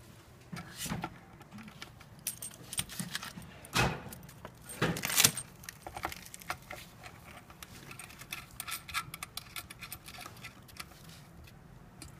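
Threaded metal plug of a DC power cable being screwed onto the metal power socket of a signal jammer: a run of small metallic clicks and rattles, loudest about four to five seconds in.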